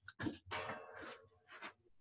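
Soft rustling and light knocks of handling and clothing close to a laptop microphone as a person moves about, in a few short bursts.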